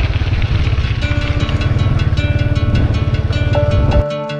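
A motorbike engine runs with a steady low rumble while riding over a rough dirt track. Background music comes in over it about a second in.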